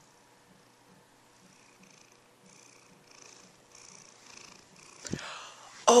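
Domestic cat purring close to the microphone: a faint, rhythmic purr that grows a little louder toward the end, with a short knock about five seconds in.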